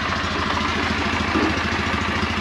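Kawasaki W650 parallel-twin motorcycle engine idling steadily.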